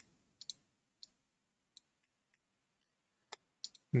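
Computer mouse buttons clicking, a few scattered sharp clicks: a pair about half a second in, single clicks at about one and just under two seconds, and a quick group of three near the end.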